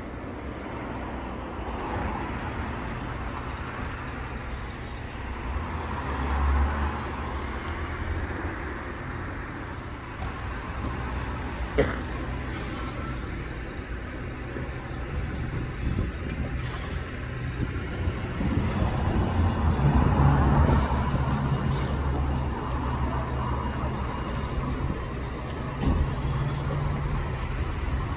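Road traffic on a nearby street: vehicle engines running steadily, growing louder about two-thirds of the way through as a heavy vehicle such as a bus or lorry goes by. A single sharp click is heard near the middle.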